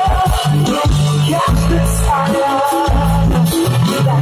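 A live band playing through a large outdoor concert PA, heard from within the crowd: deep bass notes in a stop-start pattern under a held melodic line.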